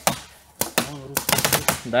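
Paintball markers firing in rapid strings, sharp pops coming several to about ten a second, starting about half a second in and growing denser toward the end.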